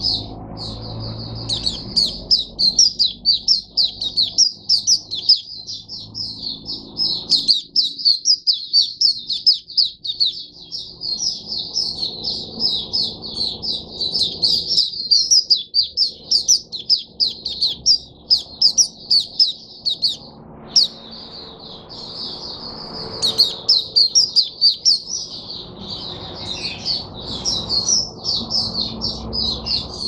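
White-eye (Mata Puteh) singing a long, fast, high-pitched twittering song of rapid notes almost without pause, broken only briefly about twenty seconds in.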